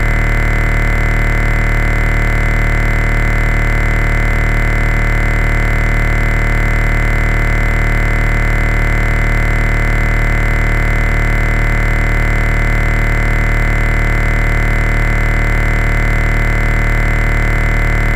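One loud synthesizer chord held dead steady, with deep bass and no beat or change. It is a sustained drone break in an electronic dance music mix.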